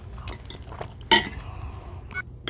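A metal fork clinking and scraping against a plate in several short knocks, the loudest a sharp clink a little past a second in.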